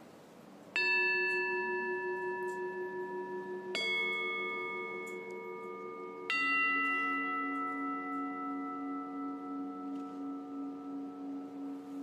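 Altar bells struck three times, about three seconds apart, each stroke a different note that rings on and slowly fades; the third is lower and keeps ringing. The ringing marks the elevation of the chalice at the consecration.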